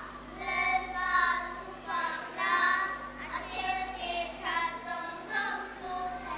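A small group of young girls singing together, sustained sung notes in a string of short phrases.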